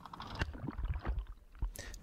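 Faint water sloshing at the bow of an aluminium boat, with a few scattered knocks and a low rumble.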